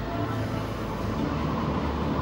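Low, steady background music with a sustained deep drone, playing through a hall's speakers.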